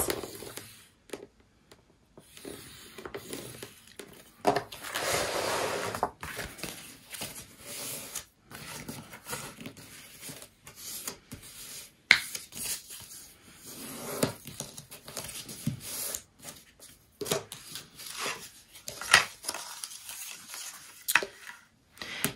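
Cardstock being handled on a scoring board: scraping and rustling strokes as the sheet is scored, folded and creased by hand, with a longer stroke about five seconds in and scattered light taps.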